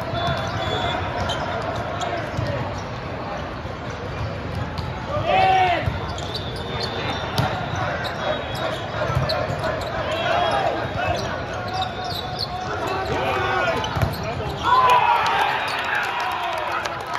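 Busy hall of volleyball play: the thuds of volleyballs being hit and bouncing over a steady murmur of many voices. Players shout during the rally, with a loud burst of shouting about five seconds in and another near the end as the point is won.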